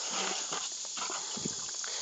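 Five-gallon plastic bucket being lifted out of the bucket it sits in: soft scraping and rustling with a faint knock about one and a half seconds in, over a steady hiss.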